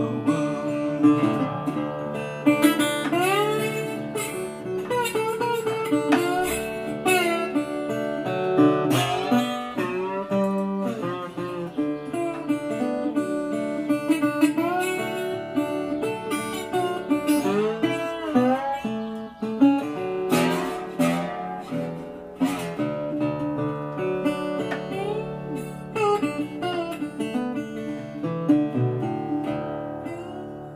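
Resonator guitar in open D tuning (DADF#AD) played with a bottleneck slide: a blues instrumental with gliding slide notes over a picked bass. The notes die away near the end.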